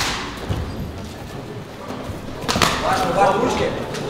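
Sharp slaps of strikes landing in a fight, one at the start and another about two and a half seconds in, followed by a brief shout in a large echoing hall.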